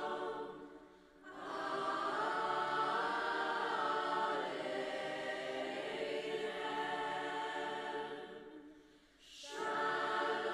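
Choir of young voices singing long sustained chords, fading into two short pauses between phrases: one about a second in and one about nine seconds in.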